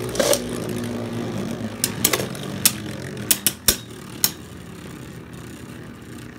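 Two Beyblade Burst spinning tops whirring around a clear plastic Beystadium, clashing with a string of sharp clacks through the first four seconds or so. The whir then fades slowly as they spin apart and slow down.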